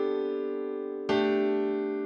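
Slow piano chords: one chord held and fading, then a new chord struck about a second in and left to ring out.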